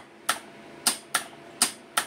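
Motor-starter contactor clacking in and out, about five sharp clicks as the start button is pressed and released: it drops out each time the button is let go, the sign of a faulty seal-in (holding) auxiliary contact 13-14.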